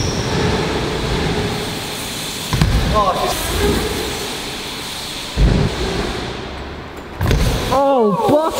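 BMX bike tyres rolling over wooden skatepark ramps, with a few thuds; the heaviest, about five seconds in, is the bike landing from an air.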